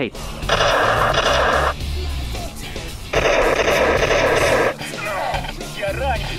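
Two synthetic electronic bursts from a laser tag blaster's speaker, each over a second long and about a second and a half apart, over background music.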